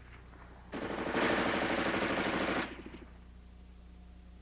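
An M2 carbine firing a single full-automatic burst of about two seconds, the rapid shots of .30 Carbine rounds running together at roughly 750 rounds a minute. The burst starts under a second in and cuts off sharply.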